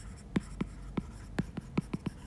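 Stylus tip tapping and sliding on an iPad's glass screen while handwriting: a run of short, sharp ticks, about seven in two seconds.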